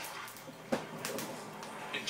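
A single sharp knock about two-thirds of a second in, over low television sound.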